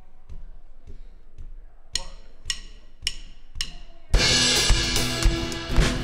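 Faint ticks keeping time, then four sharp clicks about half a second apart counting the song in, and about four seconds in a live band with drum kit and guitars starts playing loud.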